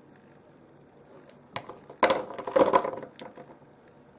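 Rough boulder opal pieces handled and swapped in the fingers, stones clicking and clattering against each other: one click about a second and a half in, then a quick flurry of knocks and clinks for about a second.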